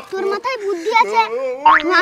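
A child's voice making wordless vocal sounds, with a short, steep rising glide near the end.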